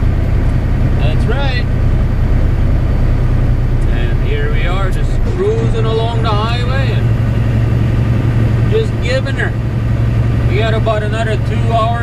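Semi truck's diesel engine and road noise droning steadily inside the cab, the low hum growing stronger about five and a half seconds in. A voice speaks in short stretches over it.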